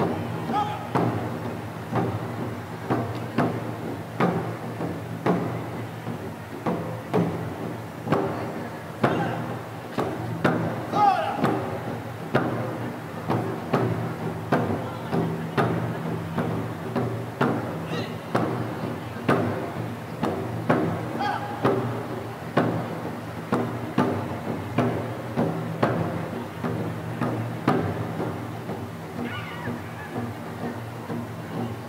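Japanese taiko barrel drums struck by an ensemble in a steady driving rhythm, about one heavy beat a second with lighter strokes between, the low drum tone ringing on in a large reverberant hall.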